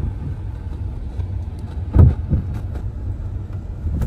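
Low, steady rumble of a car's engine and road noise heard from inside the cabin as it drives slowly along a street, with one brief louder sound about halfway through.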